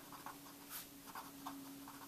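Pen writing on paper: faint, short scratching strokes as words are written out by hand.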